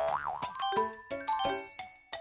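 A cartoon-style boing sound effect followed by a short playful music sting of quick, bright notes, marking a correct answer.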